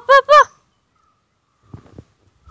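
Three quick, high-pitched calls in a woman's voice, coaxing a puppy. They are followed by a faint scuffle near the end.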